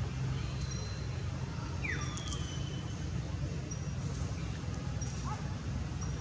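Outdoor background noise: a steady low rumble with a few faint, short high chirps, a falling squeak about two seconds in and a brief rising squeak near the end.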